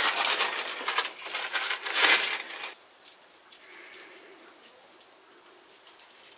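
A handful of small metal nuts and washers clinking and jingling together in a gloved hand. The clinking is busy for the first two and a half seconds and loudest about two seconds in, then thins to a few faint clicks.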